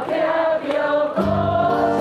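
Live acoustic band music: acoustic guitars playing under one long held sung note, with the lower guitar chords coming back in a little after a second in.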